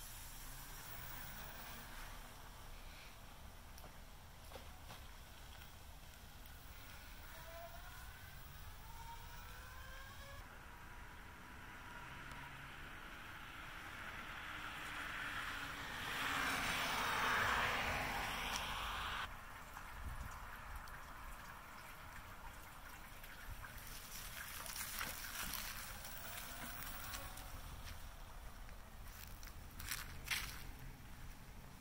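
2018 CSC City Slicker electric motorcycle riding off and passing by, definitely quiet. A faint motor whine rises in pitch several times as it pulls away, then tyre and motor noise swells to its loudest as the bike passes close a little past halfway.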